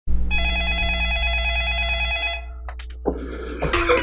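An electronic ringing tone: one steady note held for about two seconds, then cut off suddenly, followed by a few soft clicks. Near the end a man starts to laugh.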